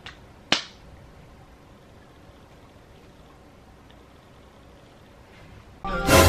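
A single sharp hand clap about half a second in, then steady quiet room tone.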